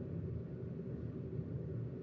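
Steady low background rumble with no distinct events: room tone.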